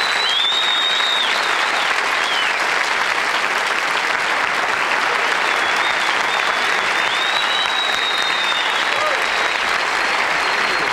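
A studio audience applauding steadily after a song-and-dance number, with a few high whistles cutting through the clapping early on and again later.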